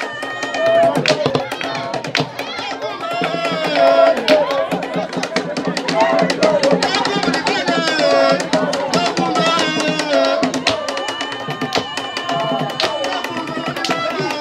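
Drumming for a traditional Punu Malamu dance, with many drum strikes under voices singing.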